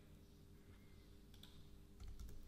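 Near silence: faint room tone with a steady low hum, and a couple of faint computer mouse clicks a little over a second in.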